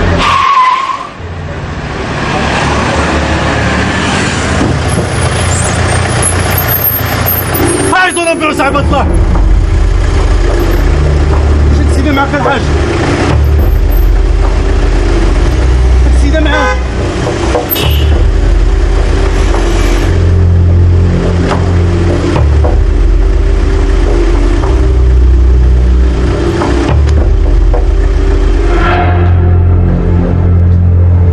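Road traffic, with a car speeding past right at the start and a continuous rush of passing cars after it, under low film-score bass notes.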